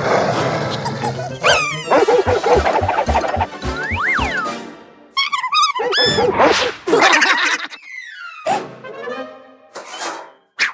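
Lively cartoon score music mixed with comic sound effects, among them a quick whistling pitch sweep near the middle, and a cartoon bulldog's vocal sounds.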